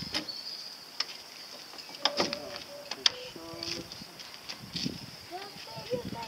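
Small-boat rigging being handled at a dinghy's mast: sharp clicks and knocks of rope and fittings, with a few short squeaky tones in the middle, over a steady high insect chirring.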